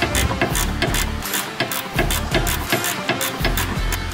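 Ratchet wrench clicking in quick, repeated strokes, with background music underneath.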